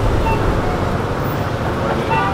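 Steady low outdoor rumble, like street traffic, with no distinct events.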